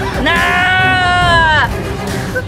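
A girl's long, high-pitched scream, held for about a second and a half before breaking off, over background music.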